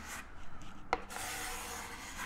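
Plastic squeegee rubbing and sliding across wet vinyl privacy film on window glass, pushing out trapped bubbles and application solution, with one short, sharp sound about halfway through.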